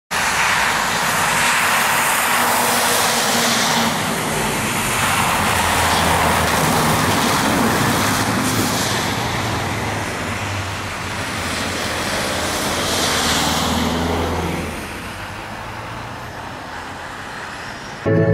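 Street traffic on wet, slushy asphalt: cars and trolleybuses passing with a steady hiss of tyres on the wet road. The sound drops lower from about 15 seconds in.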